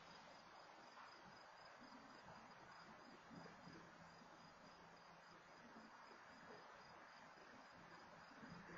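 Faint cricket chirping, a steady, evenly pulsed high trill, over low hiss, with a faint low hum joining about three seconds in.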